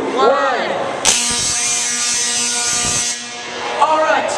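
A Tesla coil rated at 1.2 million volts fires in a spark discharge: a harsh, pitched buzz that starts suddenly about a second in and cuts off sharply about two seconds later.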